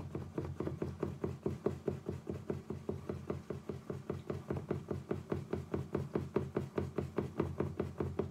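A spoon stirring yeast into water in a small glass, tapping against the sides in a quick steady rhythm of about five strokes a second, to hydrate the yeast.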